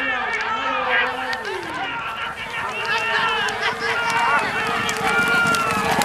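Voices calling out continuously over a horse race as the field breaks, with horses galloping on the dirt track underneath.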